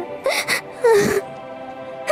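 A woman's voice crying in short sobs over soft, sustained background music: a sharp breathy gasp, then a brief falling whimper about a second in.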